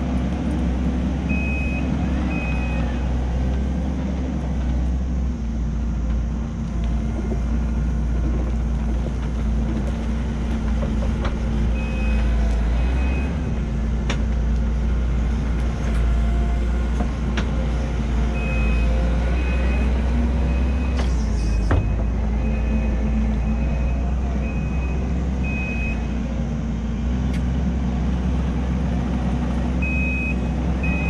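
Kubota SVL90-2 compact track loader's diesel engine running steadily as the machine drives down the slope and back up, with its reverse alarm beeping in spells while it backs up: briefly near the start, again around the middle, and for a long stretch in the last third. A single sharp knock about two-thirds of the way through.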